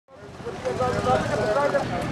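Outdoor ambience of several people's voices talking at once over a steady low rumble, fading in at the start.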